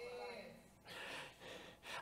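A quiet room with a faint breath from a person and a faint trace of voice near the start.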